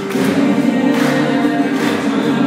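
Music with a group of voices singing together in harmony, held steadily loud.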